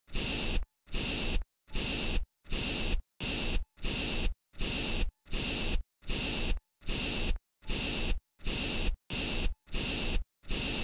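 Trigger spray bottle spraying in quick, evenly spaced squirts, about three every two seconds. Each squirt is a short hiss that stops sharply.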